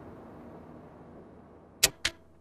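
A soft, fading tail of background music, then a single sharp click near the end.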